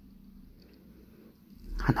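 Very quiet room noise with no distinct sound; a woman starts speaking near the end.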